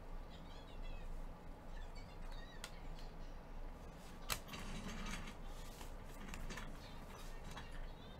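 Faint handling of a trading card and a clear magnetic one-touch card holder: soft rustling and small plastic clicks, with one sharp click about four seconds in.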